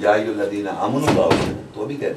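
A man speaking emphatically, cut across about a second in by two sharp thumps, a third of a second apart.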